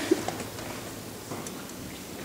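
Audience laughter trailing off in the first half-second, then the quiet background noise of the auditorium.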